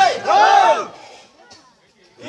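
A man's loud, drawn-out cry into a microphone, rising and falling in pitch, lasting under a second.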